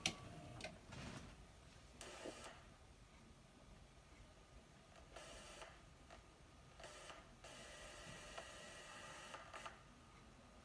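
Faint mechanical clicks and whirring from a JVC VHS video recorder threading the tape and starting playback: a click at the start, a few light clicks about a second in, then short spells of motor whir, the longest near the end.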